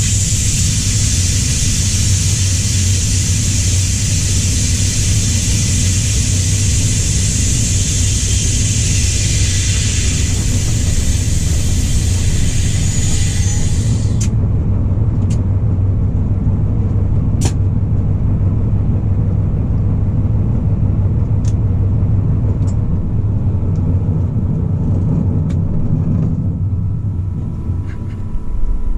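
Diesel-hydraulic engine of a DB Class 294 locomotive running with a steady low rumble, heard from the cab while the locomotive moves slowly. A loud steady hiss covers the first half and cuts off suddenly, and a few faint clicks follow.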